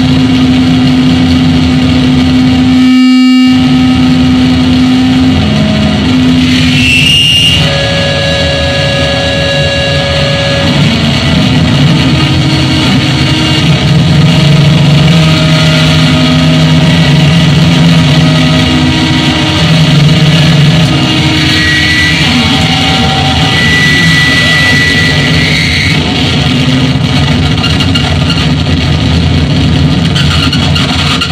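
Live harsh noise music from an electronic rig of effects pedals and a small mixer: a loud, dense rumbling wall of noise with held droning tones that shift pitch every few seconds, cutting out briefly about three seconds in.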